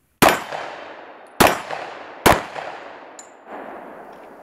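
Three shots from a Springfield Armory Hellcat 9mm micro-compact pistol, a little over a second apart, each followed by a fading echo. A faint high ping comes about three seconds in.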